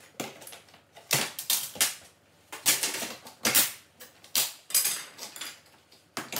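Wooden baseboard trim being pried and pulled off the wall: an irregular run of sharp cracks and snaps.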